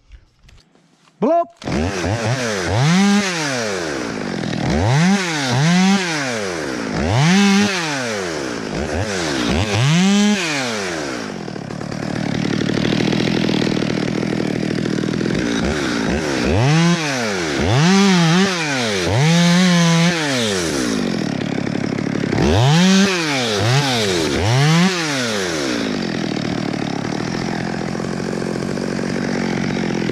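Small top-handle chainsaw starts about a second and a half in and runs on. Its pitch swings up and down about ten times as the throttle is blipped, with steadier running stretches between.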